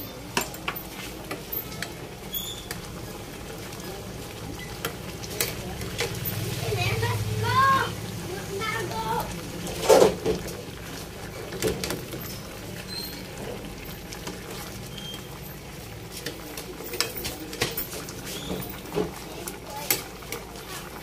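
A metal spoon stirring vegetables in a pot of coconut milk, with scattered light clinks against the pot and one louder knock about halfway through.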